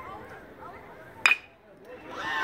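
Metal baseball bat hitting a pitched ball about a second in: one sharp, ringing ping, the loudest sound, over low crowd voices.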